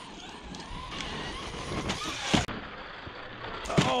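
Large electric RC truck tumbling in a crash on loose gravel: scattered knocks and rattles over a steady hiss. A brief rising motor whine comes about two seconds in, followed by one sharp, loud knock.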